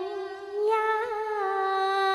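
Cantonese opera singing: one voice drawing out a lyric syllable in a long, wavering held note that steps up in pitch just over half a second in, then settles and holds.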